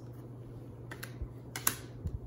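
Tarot cards being handled on a glass tabletop: a few light taps and clicks, the sharpest a little before the end, over a steady low hum.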